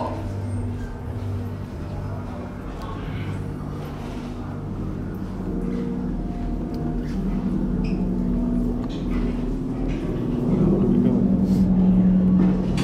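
A steady low electronic hum from the attraction's themed Star Destroyer sound effects. It shifts to a higher drone partway through, and the drone grows louder near the end.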